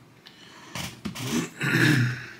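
A man's wordless throat sounds: three rough bursts in quick succession starting under a second in, the last one the longest and loudest.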